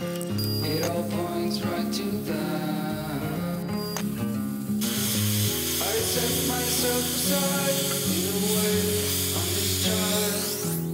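Background music, with the steady hiss of a handheld plasma cutter cutting steel plate coming in about halfway through.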